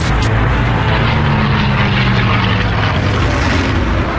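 Propeller warplanes' piston engines droning steadily: a dense rumble with a held low pitch.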